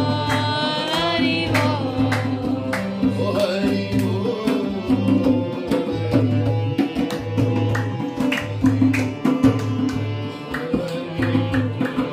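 Harmonium playing held chords over a steady hand-played beat on a dholak, a two-headed barrel drum, with hand claps and singing in places.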